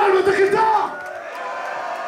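A man's drawn-out yell over the PA for about the first second, then a festival crowd cheering and shouting.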